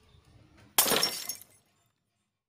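A sudden crash with a shattering, glass-breaking character about a second in. It lasts under a second and breaks off into total silence.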